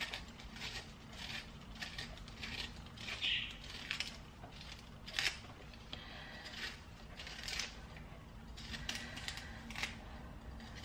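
A knife peeling a lemon: faint, irregular scraping and cutting sounds of the blade through the rind, with scattered light clicks and taps, the sharpest about five seconds in.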